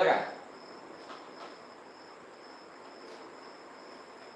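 Crickets giving a steady, high-pitched trill in the background over faint room noise, with a few faint clicks.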